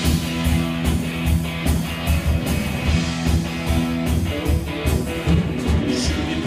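Live rock band playing an instrumental passage: electric guitars over bass guitar and a steady drum-kit beat.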